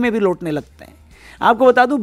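A man's voice speaking in Hindi, with a held, drawn-out syllable at the start, a short pause about a second in, then speech resuming.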